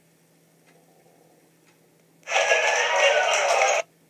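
Faint ticks about once a second, broken a little past halfway by a loud burst of noisy sound about a second and a half long that starts and stops abruptly.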